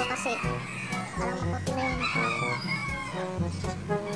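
A rooster crowing twice, the second crow longer, over background music with a steady beat.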